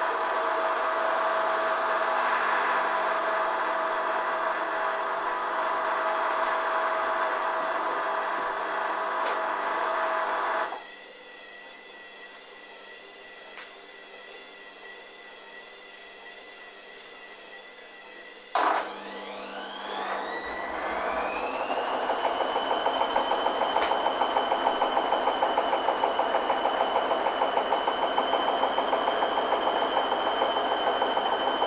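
Front-loading washing machine (Hoover DYN 8144 D) drum motor turning the wash, then cutting out abruptly about eleven seconds in. About eight seconds later the motor starts again with a whine rising in pitch as it comes up to speed. It settles into a steady whine with a regular pulsing as the drum turns.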